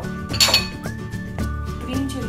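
Ceramic dishes clinking: one sharp clink about half a second in, then a few lighter knocks, as a bowl and ramekin are moved on a plate on the counter. Background music runs underneath.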